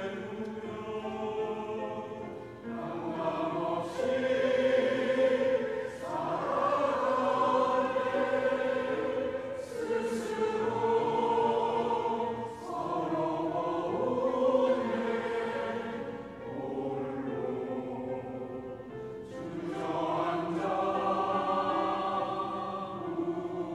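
Mixed church choir of men's and women's voices singing a Korean sacred choral piece in long, sustained phrases, with short breaks between lines.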